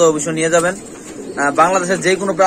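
Caged Lahori pigeons cooing, with a man's voice talking over them. The sound dips into a short lull just before the middle.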